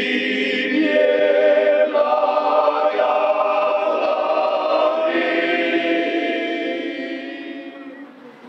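A men's choir singing a cappella, several voices holding sustained chords that shift every second or two, fading out near the end.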